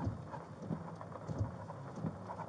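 Light rain pattering on a car roof and windows, heard from inside the cabin, with irregular muffled bumps close to the microphone.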